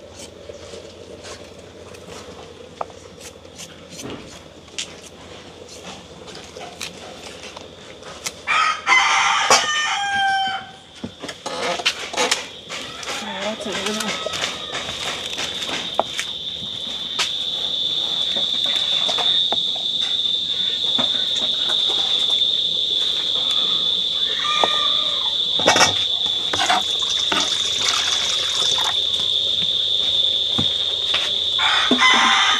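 A rooster crows once, about nine seconds in, over scattered knife taps on a wooden cutting board. From about eleven seconds a steady high-pitched buzz sets in and grows louder over the next several seconds.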